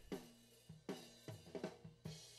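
Recorded acoustic drum kit played back at low level: a handful of separate drum hits, some with a short pitched ring after them, among them high-tom strikes.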